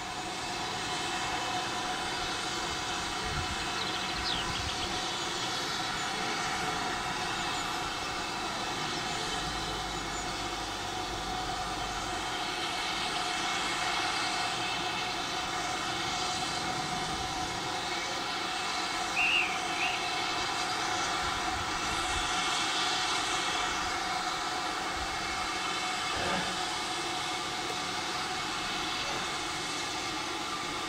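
Steam locomotive, the Southern Railway U class 2-6-0 No. 31806, standing at a platform with steam hissing steadily from it before departure. Two brief high chirps cut in, about four and nineteen seconds in.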